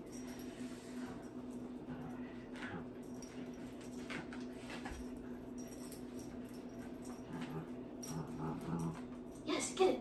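Puppy making soft vocal noises while playing tug with a toy, with a few short, low sounds near the end. A steady low hum runs underneath.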